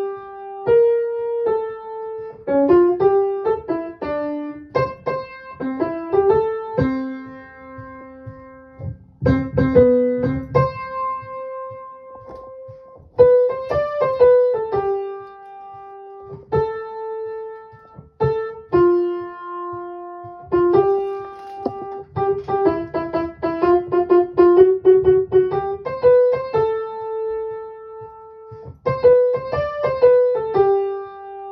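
Piano playing a single melody line note by note: the soprano part of a two-part choral arrangement, in short phrases with brief pauses between them.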